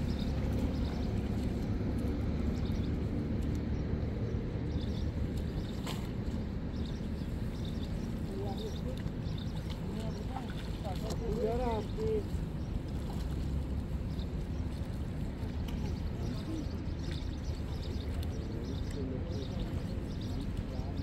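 Steady low rumble of wind buffeting the microphone outdoors, with a faint distant voice briefly about halfway through.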